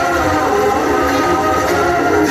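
A loud held chord of several steady tones from a played-back track, with no singing in it.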